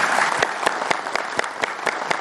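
An audience applauding, with single louder claps standing out in a steady rhythm of about four a second.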